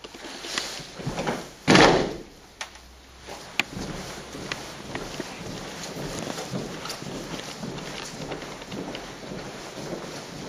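A drilling squad's boots stamp down together once, about two seconds in: a single loud crash, not quite in unison. After it come scattered small knocks and taps of drill movements over a steady rustle of wind on the microphone.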